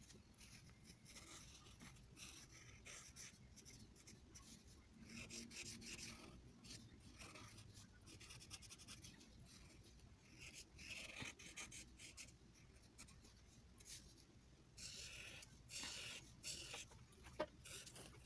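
Felt-tip marker rubbing across paper in repeated colouring strokes, heard faintly as short bursts of scratchy hiss.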